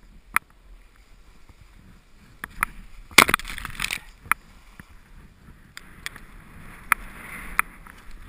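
Ski moving through deep powder snow: the snow crunching and swishing, with scattered sharp knocks. The loudest burst of scraping comes about three seconds in.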